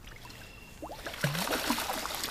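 A hooked walleye splashing and thrashing at the water's surface as it is played in close to the bank, the splashing starting about a second in.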